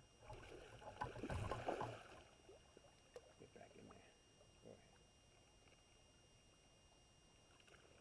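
River water splashing and sloshing around a landing net lying in the shallows, loudest in the first two seconds, then only faint small splashes.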